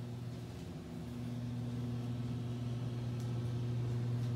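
A steady low electrical hum at one fixed pitch, growing gradually louder.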